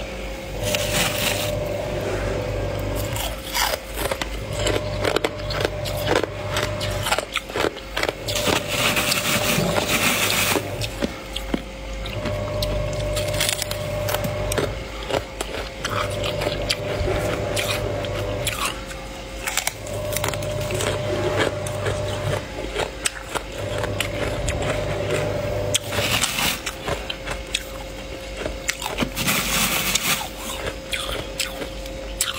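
Thick, soft frost being scraped and pulled off the walls of a chest freezer by hand, its ice crystals crunching and crackling in a dense run of small clicks. A low hum comes and goes underneath every few seconds.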